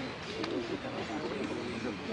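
Background voices talking mixed with bird calls, including low cooing.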